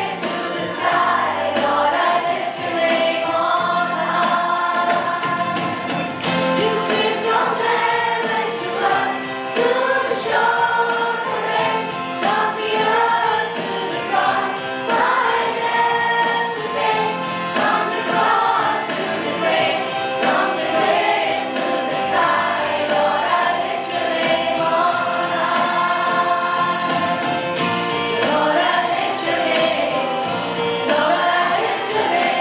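A Christian song: a group of voices singing a melody together over music with a steady beat.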